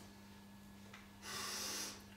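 A man's long sniff in through the nose close to a handheld microphone, a little over a second in and lasting under a second, miming drawing in the scent of someone's perfume. A faint steady low hum runs underneath.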